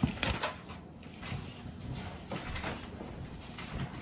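Quiet room tone with a few faint taps and rustles in the first half second, then a low steady hush.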